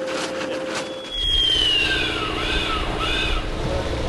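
Dockside sound of a motor or pump running with a low rumble that grows louder about a second in, over water gushing from a suction hose. A high falling squeal sounds about a second in, followed by a few short squawking calls.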